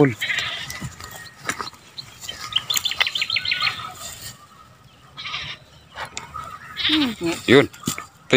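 Goats bleating: a short, high quavering call about three seconds in and a louder, lower bleat near the end.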